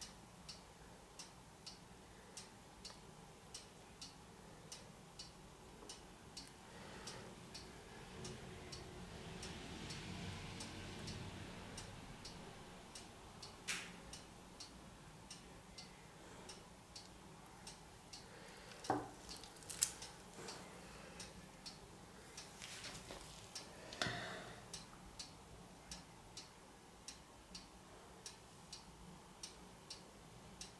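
A clock ticking steadily and quietly. A soft rustle builds a few seconds in, and a few louder clicks and knocks come around the middle as the gloved hands handle and tilt the painted canvas on the plastic sheeting.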